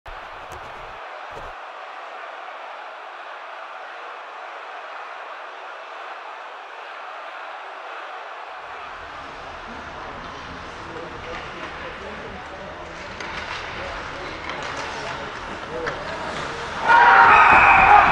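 Steady static hiss for about eight seconds, then rising noise that grows louder. Near the end comes a sudden loud burst of voices.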